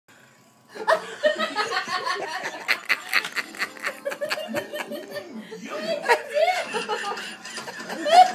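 People laughing, starting about a second in: quick chuckling pulses at first, then longer, drawn-out laughs.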